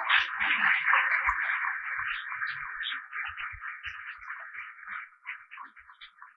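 Audience applauding, loudest at first and dying away over about five seconds.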